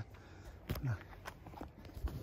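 Irregular footsteps and short knocks from a handheld camera being moved, with one short spoken word.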